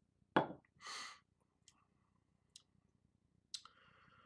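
Mouth sounds of someone tasting a sip of double IPA: a sharp smack and a breathy exhale in the first second, then a few faint clicks of the lips and tongue.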